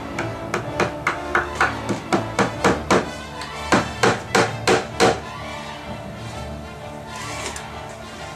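Hammer driving a stainless steel nail into a wooden porch beam overhead: a quick run of about a dozen strikes, roughly four a second, a short pause, then five more strikes, stopping about five seconds in. Background music plays throughout.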